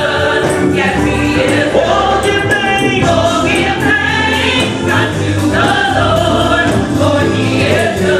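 Live gospel music: a male lead singer and a choir singing together over musical backing with a steady beat.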